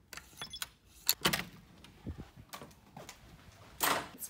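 Hotel room door's electronic key-card lock being opened: a faint high electronic tone soon after the card goes in, then a series of sharp clicks from the latch and lever handle, and a louder knock near the end as the door swings.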